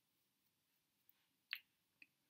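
Near silence: quiet room tone, broken by a single short click about one and a half seconds in.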